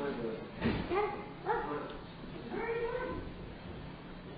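Indistinct, high-pitched voice sounds in short phrases whose pitch rises and falls, not made out as words. There are three of them: about half a second in, around a second and a half, and around three seconds.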